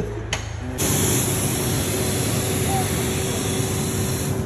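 Fire hose nozzle discharging a stream of water: a loud, steady rushing hiss that starts suddenly about a second in, with a faint steady hum beneath it.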